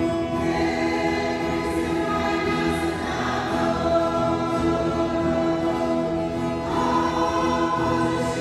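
Mixed choir of men and women singing a Christian hymn together in long held notes.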